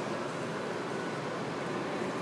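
Steady outdoor background noise: an even rushing hum with no distinct events.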